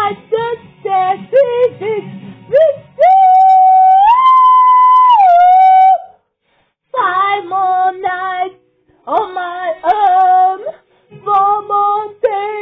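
A high singing voice in short sliding phrases. About three seconds in it holds one long note that steps up in pitch and back down, and there are brief silent gaps between phrases.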